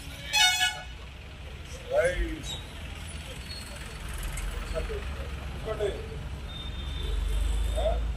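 A vehicle horn toots once, briefly, about half a second in, over a steady low rumble of street traffic. Scattered short voices of a crowd come and go.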